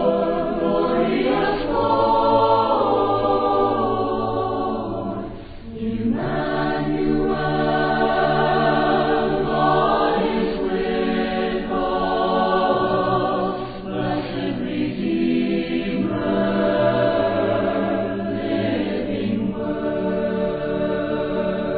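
A choir singing a cappella, several voices in harmony holding long chords, with a brief break between phrases about five and a half seconds in.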